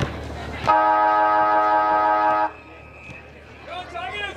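A steady horn blast of several tones at once, held for nearly two seconds and cut off sharply, sounding to start play at a football match.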